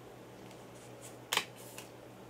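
A Blu-ray disc being lifted off the plastic centre hub of a steelbook case: one sharp click about one and a half seconds in as it comes free, with a few fainter ticks around it.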